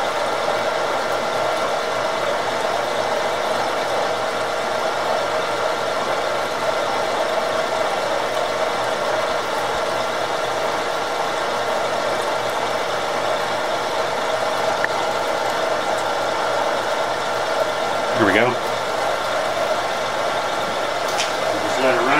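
Vertical milling machine running a steady straight cut, its end mill cutting a metal bar under flood coolant with an even mechanical hum and whine.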